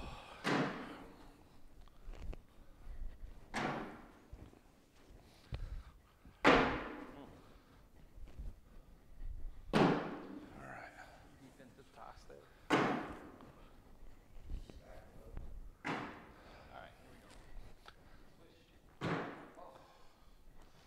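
Cornhole bags landing on a wooden cornhole board one after another, about every three seconds, seven impacts in all, each echoing in the large gym hall.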